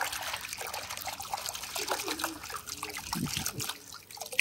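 A hand swishes a toy motorbike through a bucket of muddy water. The water splashes and sloshes, with trickling and dripping.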